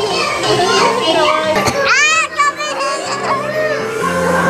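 Young girls chattering and laughing excitedly, with a high-pitched squeal about two seconds in, over background music.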